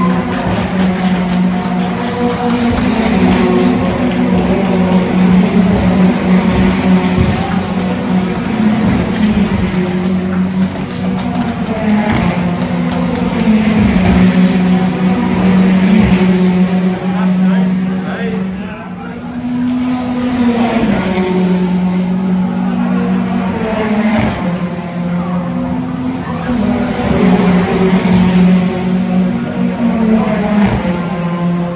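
Race car engines revving and changing pitch as cars run on the circuit, over a steady music bed with held low notes that shift a few times.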